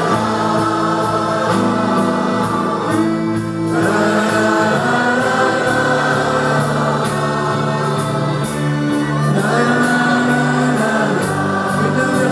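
A large choir sings a song together with a male lead singer, played live on stage with instrumental backing that includes an electric guitar. The music is loud and steady, with long held choral notes.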